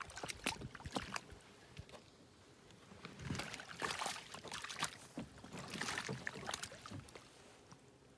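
Handling noises at a canvas-covered cedar-and-maple canoe: a few sharp knocks in the first second and a half, then two longer stretches of scraping and rustling as things are moved about inside the hull.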